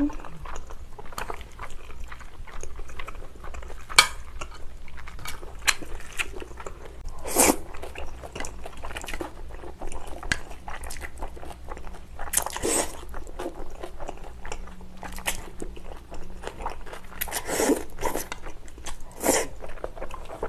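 Close-miked eating: chewing and crunching of kimchi and spicy bibim noodles, with many small clicks and a few louder noisy bursts spread through.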